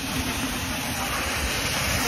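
Water jetting from an open service hole in a live water main under full pressure: a steady hissing rush of spray.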